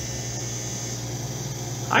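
Russell walk-in unit cooler's two evaporator fans running, a steady low hum with no change: the unit running normally with its coil free of frost.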